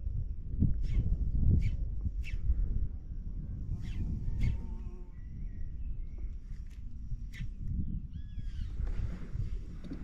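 Low, steady rumble of wind and water with scattered short ticks, and a few short chirping bird calls near the end.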